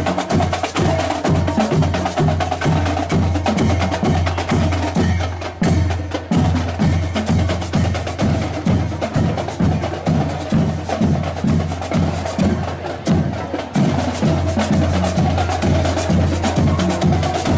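A school marching band playing: drums keep a steady, even beat under sustained brass notes.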